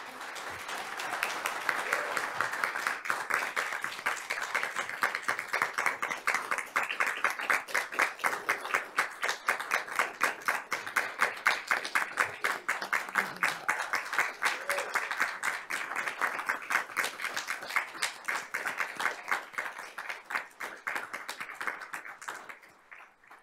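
Audience applauding: a steady crowd of hand claps that dies away at the end.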